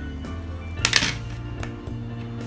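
Background music with steady sustained notes, and about a second in a brief, loud clatter of the plastic sliding-puzzle toy as it is handled and brought down onto the table.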